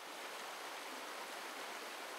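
Shallow mountain stream rushing over rocks: a steady, even rush of water.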